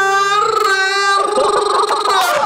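A man singing into a handheld microphone, holding a long note on the lyric '띄우'. About a second in, his voice breaks into a rough, rolled 'rrrr' trill.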